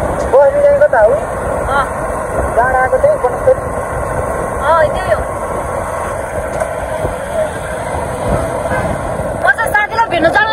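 Steady wind rush and road noise on a moving motorbike, heard from the pillion seat, with short snatches of a woman's voice in the first half.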